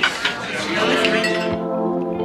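Voices at a restaurant table with a clink of glassware at the start, then music with held notes comes in about a second in.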